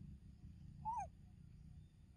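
A young macaque gives one short coo call about a second in, rising slightly then falling in pitch, over a steady low rumble.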